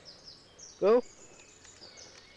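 Faint high bird calls with short downward-sliding notes, with a man's short loud "oh" about a second in.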